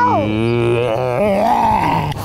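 A man's voice making a drawn-out, wordless goofy noise, a groan-like 'ooh' that wavers and slides in pitch, made while pulling a silly face.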